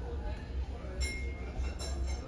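Wooden chopsticks clinking against a small ceramic dipping-sauce bowl while stirring the sauce: one clink with a short ring about a second in, and another near the end.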